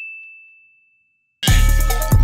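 A single bright chime ding, ringing out and fading to silence. About one and a half seconds in, loud music with a heavy bass and a beat starts.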